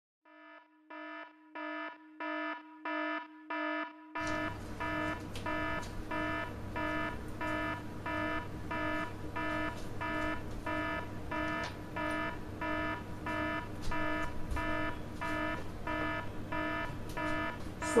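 An electronic alarm beeping steadily and repeatedly, a little under two beeps a second. From about four seconds in, a low steady hum runs underneath it.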